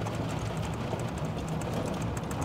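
Vehicle cabin noise while driving in the rain: a steady low engine hum with tyre hiss on the wet road and faint ticking of raindrops on the windshield.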